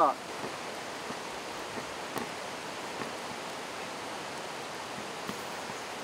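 A knife slicing a cooked steak on a wooden cutting board, with a few faint taps of the blade on the board, over a steady hiss of background noise.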